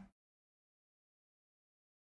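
Near silence: a short sound fades out in the first instant, then there is dead silence.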